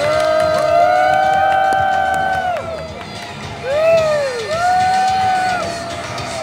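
Parade crowd whooping: several voices hold long, overlapping 'woo' calls that rise and fall in pitch, a first round lasting over two seconds, then a second round about four seconds in.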